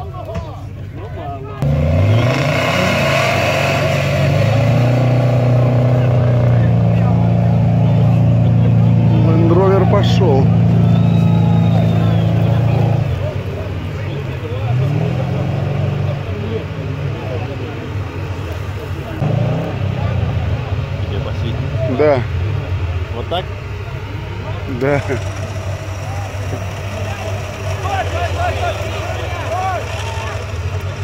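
An off-road vehicle's engine revs up sharply about two seconds in and holds at high revs for about ten seconds. It then drops back and gives several shorter revs before settling lower, with voices faintly behind it.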